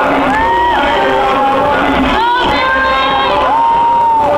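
School-auditorium audience cheering and screaming, with several drawn-out high shrieks rising above the crowd noise.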